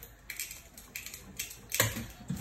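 A few short, sharp clicks and taps, irregularly spaced, the loudest near the end.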